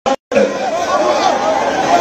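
Mostly speech: a man calls 'Hale' over the chatter and noise of a large crowd. The sound cuts out completely for a moment right at the start.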